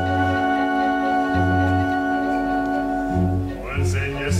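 Theatre orchestra holding a long sustained chord, with low bass notes sounding about every second and a half. A singing voice comes in near the end as the chord gives way.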